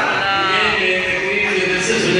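A man's voice drawn out in long, wavering melodic phrases, like chanted recitation: a rising and falling swell about half a second in, then held notes.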